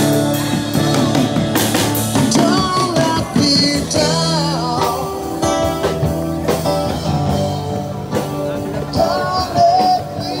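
A live street band playing blues-rock: guitar over a drum kit, with a voice singing.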